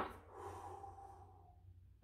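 One long, faint breath out through the mouth, lasting about a second and a half.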